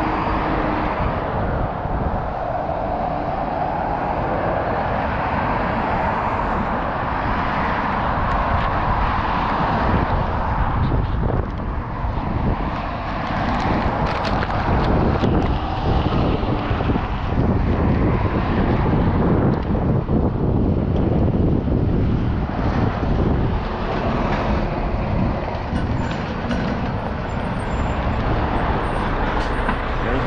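Road traffic: cars and trucks driving past in a continuous rumble that swells as each vehicle goes by, a little louder from about ten seconds in.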